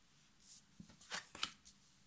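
Tarot cards being drawn and laid down on a cloth-covered table: a soft slide about half a second in, then a few short, quiet card rustles and taps near the middle.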